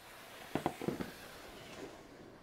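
Grey plastic snake tub being pulled out of a metal-framed reptile rack, sliding with a steady scraping hiss and a few sharp knocks and rattles between about half a second and one second in.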